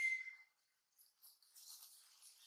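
Baby long-tailed macaque crying: one high-pitched call that falls in pitch, is held for a moment and stops about half a second in. Only faint, soft, scattered sounds follow.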